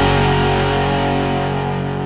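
The song's final chord on distorted electric guitar, held and ringing out, fading steadily away.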